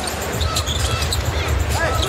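Live NBA arena game sound: a basketball dribbled on the hardwood court over a steady crowd murmur.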